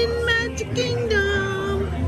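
A toddler's sing-song vocalizing: a held 'aah' and then a longer one that drops in pitch about a second in, over a steady low background hum.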